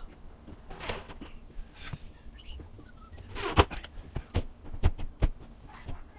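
Knocks and clicks of an open dishwasher being handled as its door is lifted closed. The loudest knock comes about three and a half seconds in, with a run of sharper clicks after it and a brief high squeak about a second in.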